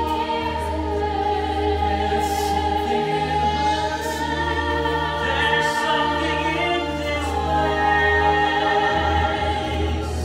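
Stage musical cast singing in chorus over instrumental accompaniment, with long held notes above a steady bass line.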